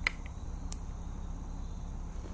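Hobby knife cutting through the plastic housing of a USB-C audio adapter: one sharp click at the very start and a fainter one under a second later, over low steady room noise.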